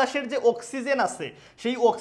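A man speaking Bengali in a continuous lecture.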